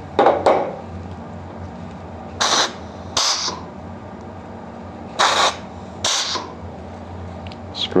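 A 5/2 plunger spring air valve is pressed and released, each shift venting a short hiss of compressed air through its exhaust silencers as the double-acting air ram strokes; the hisses come in pairs under a second apart, two pairs in all. The adjustable exhaust silencers throttle this exhaust to set the ram's speed.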